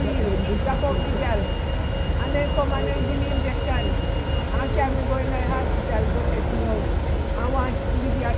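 Voices talking over the steady low rumble of street traffic, with a double-decker bus's diesel engine idling close by. A thin, steady high whine stops about halfway through.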